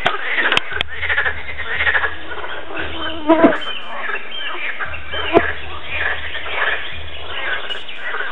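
A chorus of frogs croaking continuously at the water's edge, many calls overlapping. There are a few sharp clicks near the start, a louder nearby call about three and a half seconds in, and a single sharp knock about two seconds later.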